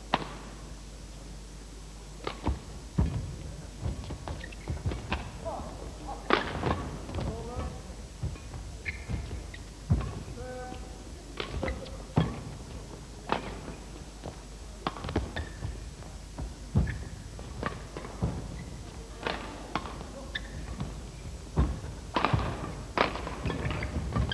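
A badminton rally in a large hall: a string of sharp racket hits on the shuttlecock, irregularly spaced about a second apart, mixed with thuds from the players' footwork on the court.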